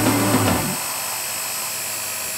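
Electric drill running steadily with a high motor whine as a twist bit bores into engineered wood. Background music stops in the first second.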